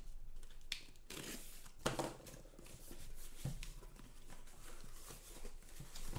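Cardboard shipping case being torn open by hand: the flaps rip and scrape in short, irregular rustling bursts, with a sharp snap about two seconds in.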